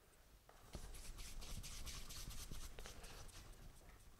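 Faint dry rubbing and rustling of hands kneading and rolling a small piece of green sugarpaste, starting about a second in and easing off near the end.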